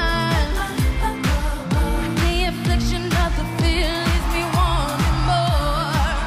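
A female pop singer singing live into a handheld microphone over an amplified dance-pop backing track, with a steady kick drum at about two beats a second.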